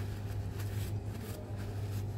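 Steady low rumble of road traffic, with faint rustling of a paper napkin being handled.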